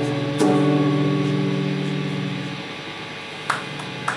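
Live band music with electric guitars holding a sustained chord, struck again about half a second in, then fading away from a little past halfway. A few short, sharp sounds come near the end.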